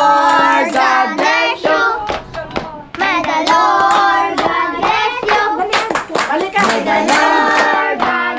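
A group of voices, children among them, singing together with hands clapping along; the singing breaks off briefly between about two and three seconds in.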